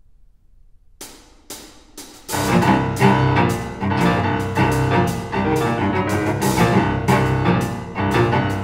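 Chamber trio of amplified piano, amplified cello and percussion starting a piece. After about a second of near quiet come a few sharp isolated strokes, then the full trio comes in loudly at about two seconds with hard, repeated accented chords.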